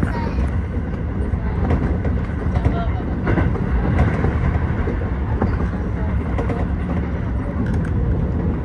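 Keio 8000 series electric train running at speed, heard from inside the front car: a steady low rumble of wheels on rail, broken by scattered short clicks from the track.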